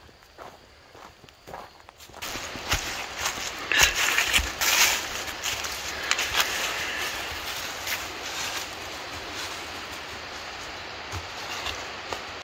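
Footsteps on a dry, leaf-strewn dirt trail. From about two seconds in, a loud steady rushing noise sets in and runs on beneath the steps.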